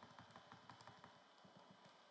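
Faint, rapid clicking, about seven clicks a second, from computer input used to step through animation frames.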